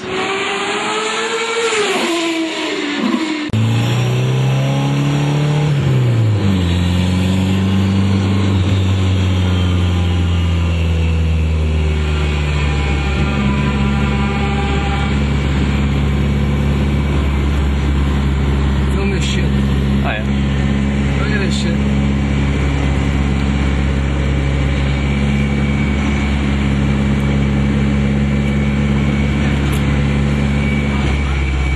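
A car engine revving up and down as it goes by. After a cut, a car engine is heard from inside the cabin: it drops in pitch and settles into a steady low drone that holds on.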